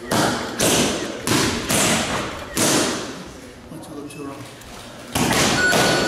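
Boxing gloves smacking leather focus mitts in quick combinations: about five punches in the first three seconds, then more from about five seconds in, each echoing briefly.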